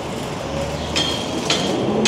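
A Chevrolet compact SUV driving past close by, its engine rising in pitch as it pulls through the turn over the street's traffic noise. Sharp clicks repeat about twice a second through the second half.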